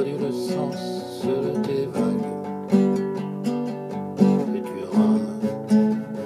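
Acoustic guitar strummed and picked, playing a steady run of chords.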